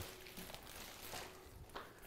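Quiet room tone in a kitchen, with a few faint, soft handling sounds.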